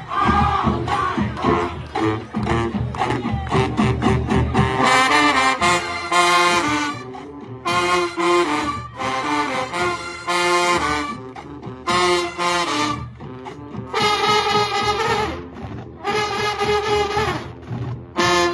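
College marching band playing a stand tune with brass and drums. The first few seconds are mostly drumming; from about five seconds in, the brass play loud punched chords in short blasts with brief breaks between them.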